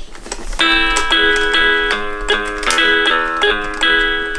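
Electronic Coco toy guitar playing a melody of synthesized guitar notes, a new note every quarter to half second, starting about half a second in.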